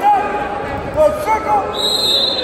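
Wrestling shoes squeaking in short chirps on the mat as a wrestler drives in on a takedown shot, with a thud about a second in as the two go down. A steady high-pitched tone starts near the end.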